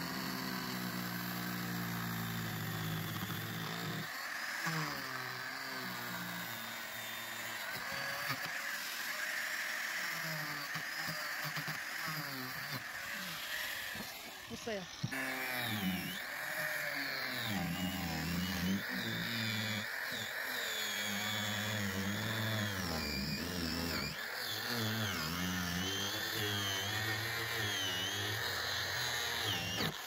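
Angle grinder with a cutting disc cutting through GRP (glass-reinforced plastic), its motor pitch sagging and recovering as the disc bites into the glass fibre. There is a short break about halfway through before the grinding resumes.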